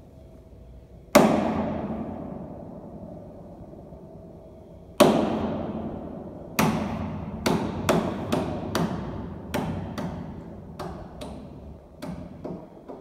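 Grand piano struck hard in loud, isolated chords. A first chord about a second in is left to ring and die away, another comes near the middle, then a run of shorter accented chords follows at uneven intervals, each still ringing as the next lands.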